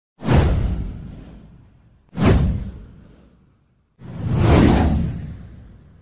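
Three whoosh sound effects of a title animation, about two seconds apart. The first two hit sharply and fade away; the third swells in more gradually before fading.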